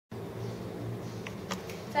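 A steady low buzzing hum, with two faint clicks a little past the middle.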